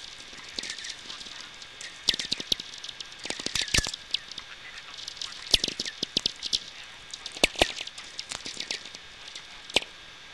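VLF natural radio picked up by a magnetic-loop (B-field) receiver: a running crackle of lightning sferics, sharp irregular clicks several times a second. Many clicks carry a short whistling 'tweek' tail that falls in pitch. The loudest clicks come about halfway through and again a couple of seconds later.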